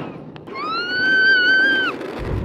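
A small child's high-pitched squeal, one held note that rises at the start and drops away at the end, lasting about a second and a half.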